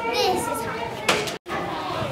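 Children's voices talking, cut off abruptly for a split second about one and a half seconds in.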